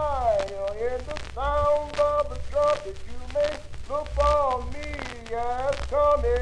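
A voice singing held notes that slide up and down between pitches, over a low hum.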